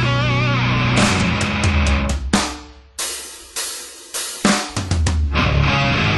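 Grindcore band recording: distorted guitar with wavering bent notes over drums. About a second in, the band breaks into a stop-start passage of sharp drum-and-guitar hits with short gaps between them. Near the end the full band comes back in.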